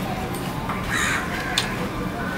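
Close eating sounds of a man eating wet panta bhat (water-soaked rice) by hand: chewing with sharp mouth clicks, the loudest a little after halfway. A harsh bird call sounds about a second in.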